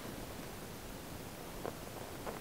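Faint, steady hiss with one light tap of cardboard about one and a half seconds in, as a cardboard outer sleeve is held and the inner box starts to slide out of it.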